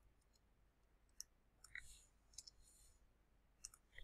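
Faint, scattered clicks of a computer keyboard and mouse as text is edited, with a small cluster of taps near the end.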